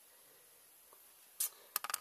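Mostly quiet room tone, then a brief hiss-like burst about a second and a half in and a few sharp clicks near the end.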